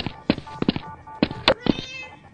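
A run of irregular light knocks and taps, about a dozen in two seconds, with a short high-pitched cat meow near the end.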